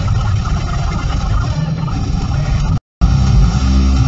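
Steady road and engine noise heard from inside a car, cut off suddenly near the end by a moment of silence, after which rock music comes back.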